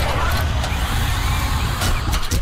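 Sound effects of an animated logo sting: a loud, dense rumbling whoosh, with a few sharp clicks near the end as the blocks snap together.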